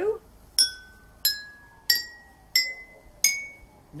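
Five water-filled drinking glasses struck one after another with a metal spoon, about one tap every two-thirds of a second. Each gives a short, clear ringing note a step higher than the last, a five-note scale rising from low to high, with each glass's pitch set by how much water it holds.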